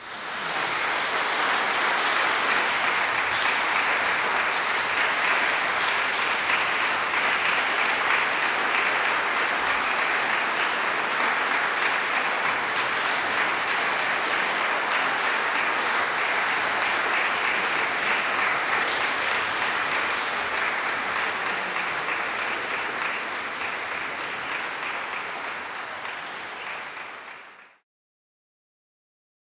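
Audience applauding a string quartet's performance, a steady clapping that starts as the music ends, dies away over the last several seconds and then cuts off abruptly.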